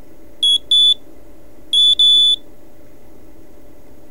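A homemade Hall-effect magnetic field tester beeping as a magnet is waved past its sensors: two short high-pitched beeps, then about a second later two more, the last a little longer. A faint steady hum runs underneath.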